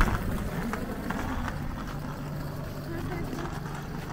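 Low steady electric hum from a PKP Intercity ED160 electric multiple unit standing at the platform, with a couple of level low tones.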